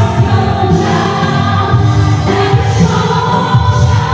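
Live worship song played through a PA: a woman singing over electric guitar, with many voices singing along.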